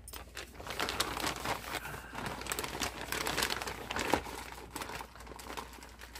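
Packaging being handled and unwrapped, a continuous irregular crinkling and rustling that eases off slightly near the end.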